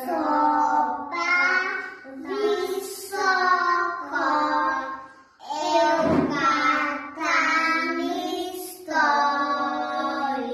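Young children singing a song together, in drawn-out held notes with short breaks between phrases.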